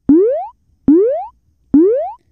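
Cartoon-style sound effect: three quick upward-sliding 'boing' tones, each starting sharply and rising in pitch for about half a second, repeated a little under once a second.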